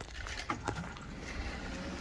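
A few faint clicks, then a faint steady hum near the end, from the car's controls as it is readied to start.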